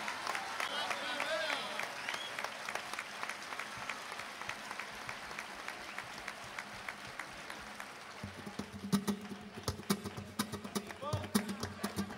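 Flamenco hand clapping (palmas) with sharp percussive strikes. It becomes louder and fuller about eight seconds in as heavier hits join.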